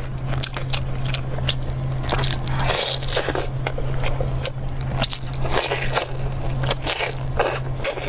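Close-miked eating sounds: a person biting, tearing and chewing sticky braised meat off the bone, with many short wet clicks and smacks. A steady low hum runs underneath.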